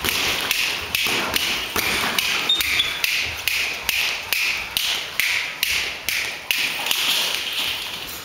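Boxing sparring: a run of sharp taps and thuds from gloves and footwork, coming fairly evenly about twice a second, each with a short hiss after it.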